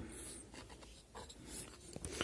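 Faint scratching and rubbing: a clear plastic ruler and the model being handled close to the microphone, with a few small ticks.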